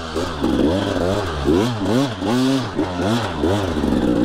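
Dirt bike engine revving up and down in quick throttle bursts, about two swells a second, as the bike picks its way up a rocky climb. This is throttle control for traction, to avoid spinning the rear tire.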